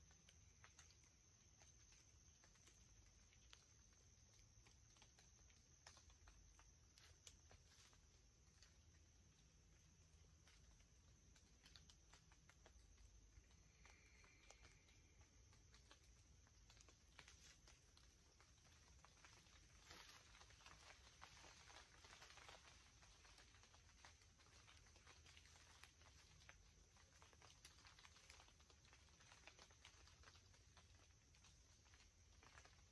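Near silence: faint woodland ambience with scattered small ticks and rustles, thickest about two-thirds of the way through, under a steady faint high hiss. A brief high tone sounds about halfway through.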